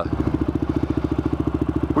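Motorcycle engine idling with a fast, even exhaust beat.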